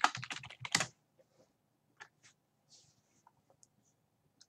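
Computer keyboard typing: a quick burst of keystrokes in the first second, then a few scattered faint clicks.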